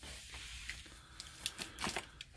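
Faint handling of a small cardboard box, with a few small clicks in the second half.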